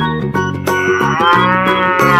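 A cow sound effect: one long moo, rising and then falling in pitch, starting about two-thirds of a second in, over background music.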